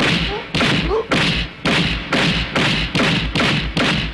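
Film fight-scene punch sound effects: a fast run of thuds, about two a second, with men's grunts and shouts between them.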